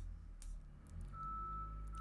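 Faint construction noise from outside: a low steady machinery rumble, joined about a second in by a thin, steady high-pitched electronic beep like a vehicle's reversing alarm.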